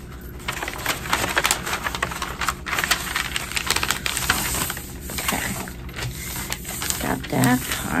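Wrapping paper being handled, folded and creased around a gift by hand: irregular crinkling rustles and small sharp crackles.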